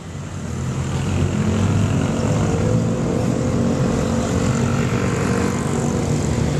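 A motor vehicle engine running at a steady speed close by, growing louder over the first second and then holding a steady hum.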